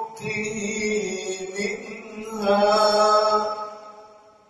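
A man reciting the Quran in the slow, melodic tajweed style, amplified through a handheld microphone. He draws out long, ornamented notes, swells louder a little past halfway, then lets the phrase fade away near the end.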